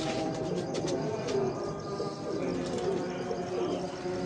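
Domestic pigeons cooing, with a few light clicks in the first second.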